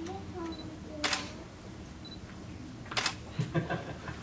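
Camera shutter firing twice, about a second in and again about three seconds in, each a sharp click, with a few smaller clicks and faint murmured voices after the second.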